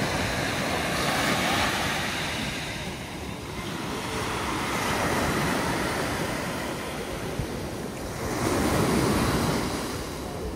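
Sea waves breaking and washing up a pebble beach, the surf swelling and ebbing every few seconds.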